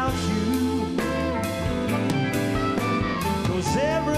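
A blues band playing live: harmonica, electric guitars, bass and drums keeping a steady beat, with a male voice singing.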